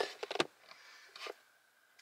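A few quick, faint clicks in the first half second, then near silence.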